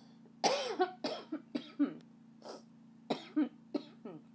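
A woman's coughing fit: several hard coughs in quick succession, with short gaps between them.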